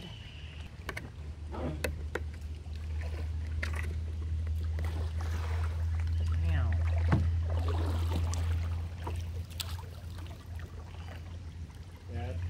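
A kayak being paddled: double-bladed paddle strokes in the water with a few sharp knocks against the plastic hull, over a steady low rumble that swells in the middle.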